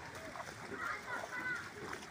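Footsteps wading through shallow floodwater over a railway track, splashing, with indistinct voices in the background.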